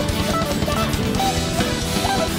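A rock band playing: guitar and drum kit keep a steady beat under a melody line of short notes that bend and slide between pitches.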